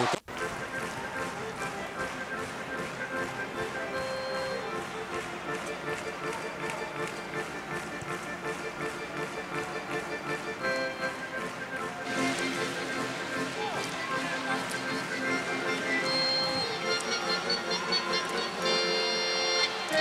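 Arena music over the public-address system, long held chord-like notes, played after the home side's goal. The sound cuts out briefly at the very start.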